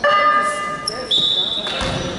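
Indoor basketball game in a large echoing gym: a short flat buzzing tone at the start, a high steady tone from about a second in, and a ball bounce near the end, with voices in the hall.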